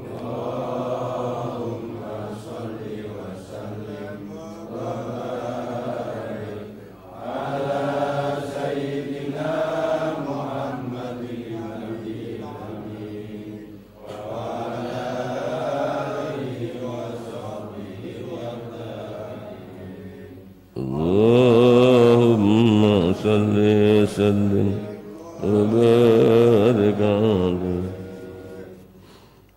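Male voices chanting a sholawat, the Arabic blessing on the Prophet Muhammad, in long, slow melodic phrases that answer the verse just recited. The chant is louder for the last several seconds.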